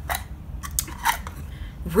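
About five short, sharp clicks over the first second or so, then a woman's voice starts right at the end.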